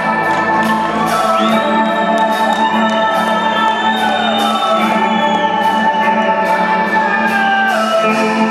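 Rock band playing an instrumental passage live, with no vocals: held chords and a steady beat under a gliding, wavering lead melody that comes in about a second in.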